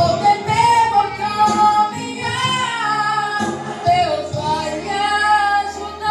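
A woman singing a Portuguese gospel praise song through a microphone and amplifier, in long held notes that glide up and down in pitch.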